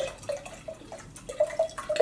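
White wine glugging out of a glass bottle into a stemmed wine glass, a quick run of gurgles at about four or five a second, with a small click of glass at the start.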